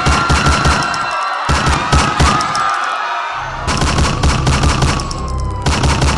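Rapid bursts of gunfire sound effects, several shots a second, over dramatic music; a long tone rises and then falls, and a low drone comes in about three seconds in.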